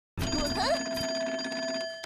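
Cartoon telephone ringing: a rotary phone's bell rings continuously, then stops just before the receiver is lifted.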